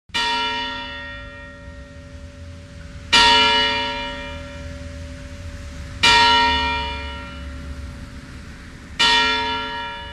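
A single bell, such as a church bell, tolling four times at an even pace of about one stroke every three seconds. Each stroke rings on and fades slowly before the next.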